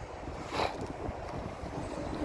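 Wind buffeting the phone's microphone as a low, uneven rumble, with a short breathy noise about half a second in.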